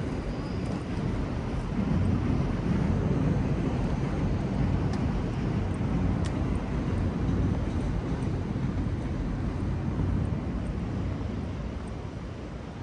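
Low, steady rumble of city traffic noise from a passing vehicle. It swells about two seconds in and eases off near the end.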